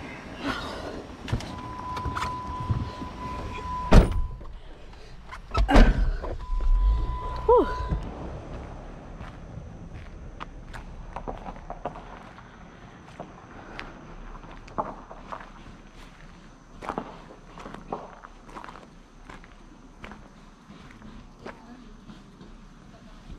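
Jeep door and camera handling: a steady electronic beep holds for a couple of seconds and is cut off by a sharp knock. A heavy door thump with rumbling bumps comes about six seconds in, followed by a second short beep. After that the sound is quieter, with scattered light taps and a faint steady high whine.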